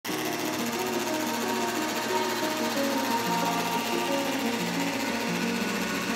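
A drill-driven carbon fiber chopper running with a steady, rapid clatter as its roller and blade assembly cut carbon fiber tow into short pieces, under background music.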